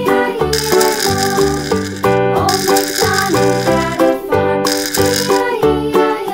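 Upbeat children's background music with a bass line and melody, with a shaker or rattle running through two stretches in the first part.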